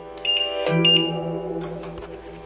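Bosch induction hob's touch controls beeping as they are pressed: two short, high electronic beeps about two-thirds of a second apart, over background music.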